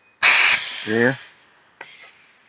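Compressed air hissing out of a 1/8" 5/2 toggle valve's exhaust silencer as the valve is thrown and the pneumatic actuator moves: a sudden loud burst that fades over about a second, the exhaust restricted by a flow control screwed into the port. A second short hiss comes near the end.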